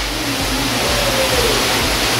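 Steady rushing background noise of an aquarium hall, from water circulating through the tanks and running machinery, with a faint voice in the background around the middle.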